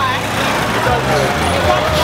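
Street hubbub: several voices talking and calling over the steady low hum of idling vehicle engines.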